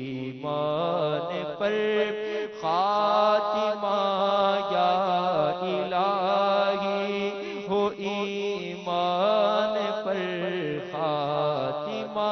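A man chanting an Urdu devotional supplication in long, drawn-out phrases whose pitch bends and wavers, over a steady low sustained drone.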